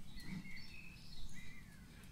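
A few short bird chirps over a low, steady outdoor rumble.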